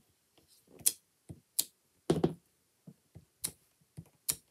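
Photopolymer rubber-stamp block being pressed down and lifted on cardstock over a stamping mat, repeated stamping that gives separate sharp clicks and soft knocks at uneven intervals, about four louder ones with fainter taps between.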